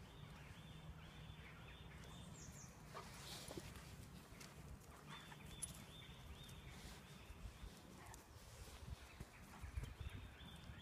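Near silence: faint outdoor ambience with a few soft, scattered taps.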